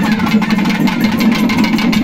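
Loud, fast Tamil folk drumming with dense, even strokes over a steady low drone.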